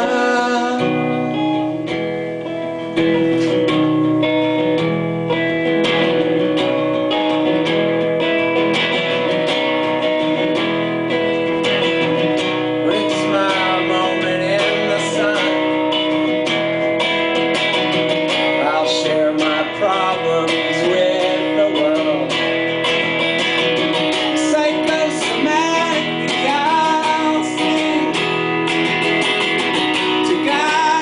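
Solo acoustic guitar strummed live, with a man's voice singing a melody over it from partway through.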